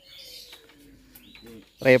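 Faint bird calls, one low-pitched and one higher, under the open air; a man's voice starts speaking loudly near the end.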